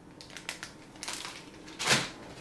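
Clear plastic bag holding a car-stereo wiring harness crinkling and rustling in the hand as a scatter of light crackles, with a louder, brief crinkle near the end.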